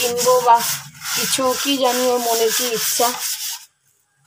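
Hard scrubbing on a stained kitchen basin, giving a rasping, stroke-by-stroke rub with squeaky, wavering tones over it. It stops abruptly about three and a half seconds in.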